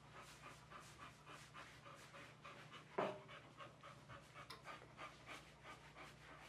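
Boxer dog panting quietly in quick, even breaths, about three or four a second, with one sharp knock about three seconds in.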